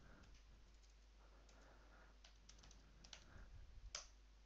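Faint computer keyboard typing: scattered key clicks, coming closer together in the last second or so and ending with one louder keystroke just before the end.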